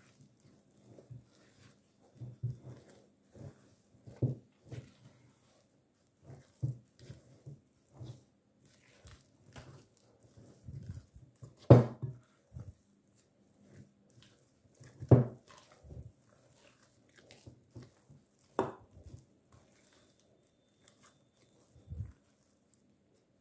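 Spatula stirring a thick mashed-potato mixture in a glass bowl as flour is worked in to stiffen it: soft irregular squelches and scrapes, with three louder knocks against the glass about halfway through and later.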